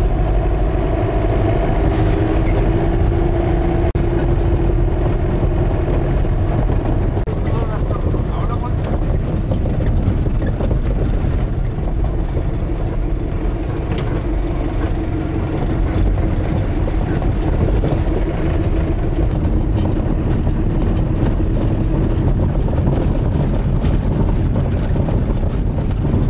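Vehicle engine running and road noise heard from inside the cabin while driving over a rough gravel road: a steady low rumble with a faint engine drone and scattered rattles and knocks.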